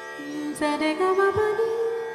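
Duet of Turkish electric saz and a woman's Indian classical voice in a slow raag: a held melodic line steps upward in pitch over sustained notes, with a sharp plucked saz stroke about half a second in.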